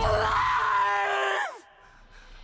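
A man's long, triumphant yell of "I'm alive!", held on one high, steady note, then sliding down in pitch and breaking off about a second and a half in, leaving near silence.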